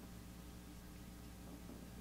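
Quiet room tone: a faint, steady low hum with no other sounds.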